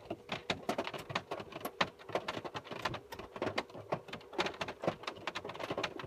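Rain pattering: a dense, irregular run of drops ticking on hard surfaces close to the microphone.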